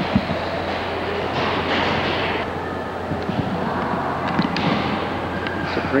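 Steady, echoing background din of a large marble hall, with a constant low hum underneath and a few faint clicks about four and a half seconds in.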